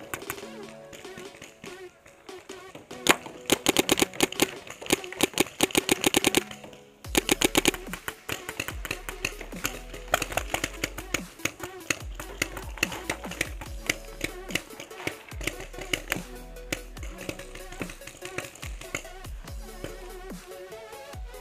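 Dubstep music: a fast run of even drum hits building up, a brief break about seven seconds in, then a heavy bass drop with a steady beat.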